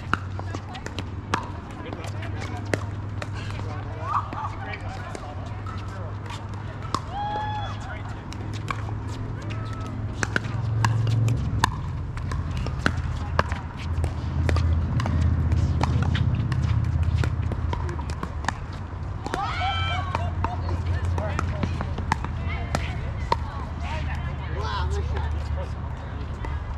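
Pickleball paddles striking a plastic pickleball: many short, sharp pops at irregular intervals throughout. A steady low rumble and brief voices run underneath.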